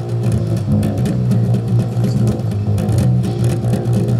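Live rock band playing an instrumental passage between vocal lines: electric bass guitar prominent in the low notes, over a steady beat of drums and cymbals.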